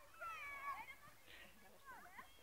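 Young children's high-pitched voices calling and crying out, a burst of overlapping cries in the first second, then quieter.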